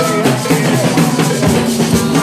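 Live music with an acoustic drum kit playing a beat of bass drum and snare strokes over sustained pitched notes from other instruments.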